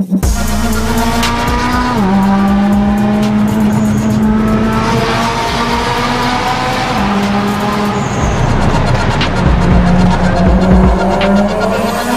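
Mitsubishi Lancer Evolution X turbocharged four-cylinder, tuned to about 500 hp at the wheels, accelerating hard. Its pitch climbs, drops sharply about two seconds in at an upshift, then climbs steadily through a long pull in the next gear.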